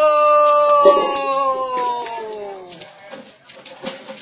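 A man's voice holding one long sung note that slides down in pitch and fades out about three seconds in, followed by a few faint clicks.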